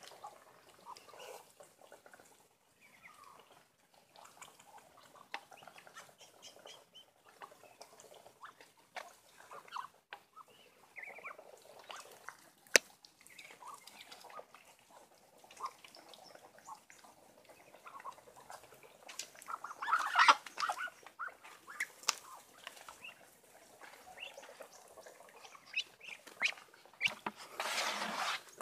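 Muscovy ducks feeding from a pan of wet bran mash: scattered clicks and dabbling of bills in the feed, mixed with short soft calls. There is one sharp click about 13 seconds in, and a louder flurry around 20 seconds and again near the end.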